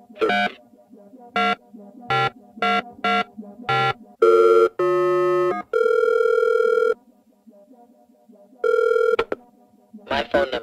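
Recorded automated telephone line: a run of short electronic beeps about half a second to a second apart, then several steady phone signal tones, each held for up to about a second, with a short pause before one last tone near the end.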